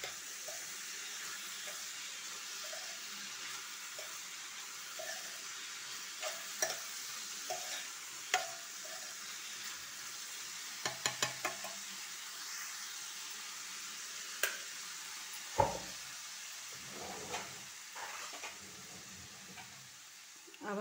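Chopped radish and radish leaves sizzling in a steel pan as the finished dish is stirred with a metal spoon. A steady hiss runs under scattered clicks and scrapes of the spoon against the pan, with a quick run of clicks about eleven seconds in and a louder knock a few seconds later.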